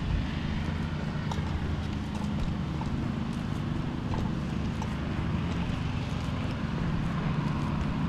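Footsteps on a concrete path, heard as faint ticks over a steady low rumble of wind and clothing rubbing on a body-worn camera's microphone.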